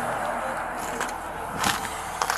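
Steady outdoor background noise, a constant hiss and rumble, with one short sharp sound about a second and a half in.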